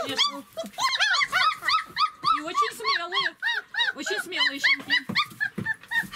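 26-day-old German shepherd puppies whining and yelping: a continuous string of short, high-pitched calls, each rising and falling, several a second.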